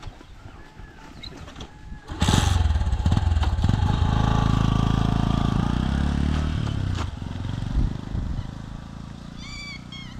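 Small motorcycle engine revving up suddenly about two seconds in and pulling away, running loud for a few seconds, then fading as the bike rides off into the distance.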